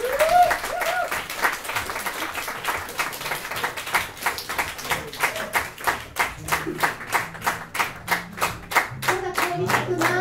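An audience clapping together in time, a steady beat of about three claps a second.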